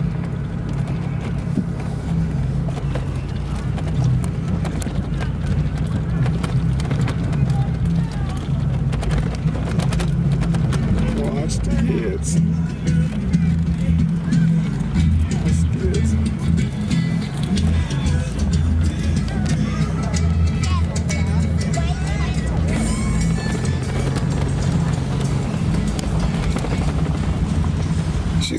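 Heard from inside a 1991 Buick Reatta on the move: a steady low drone of its V6 engine and tyres on the road.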